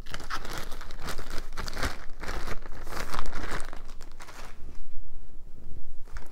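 Crinkly packaging being handled: a dense, irregular run of crinkling and crackling, easing briefly about four seconds in.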